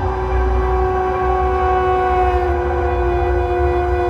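Slow contemporary ensemble music of double-tracked violin, soprano saxophone and EBow guitar: several long held notes sound together in a steady chord, a new note entering right at the start, over a low rumble.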